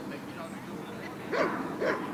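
A Belgian Malinois barks twice, two short barks about half a second apart, during a protection exercise against a bite sleeve.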